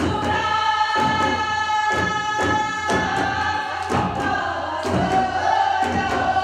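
Korean traditional folk singing (gugak): several voices sing a melody together over Korean barrel drums (buk) struck in a steady beat, about two strokes a second.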